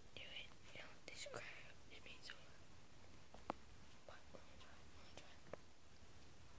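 Faint whispering for the first two seconds or so. After that it is near quiet, with a couple of small, faint clicks.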